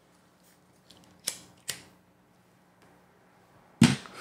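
Two short, sharp clicks a little over a second in, less than half a second apart, then near the end a loud pop of a smoker's breath hitting the close microphone as he starts to blow out smoke.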